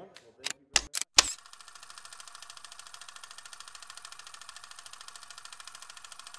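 A sound effect for an animated logo: four sharp clicks, each louder than the last, then a steady, rapid mechanical clatter that runs on evenly.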